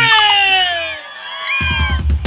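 Live band music: the held chord of a song stops about a second in while a long tone slides down in pitch, then a drum kit starts a new beat near the end.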